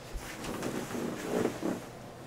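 Cloth and bedding rustling with soft bumps as a person sits down on a bed, settling in over about a second and a half.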